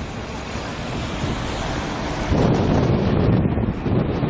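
Wind buffeting an outdoor camera microphone: a steady rushing noise that gets louder and heavier about two seconds in.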